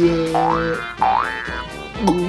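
Two springy cartoon 'boing' sound effects, each a quick rising glide, about a second apart, over a held musical chord.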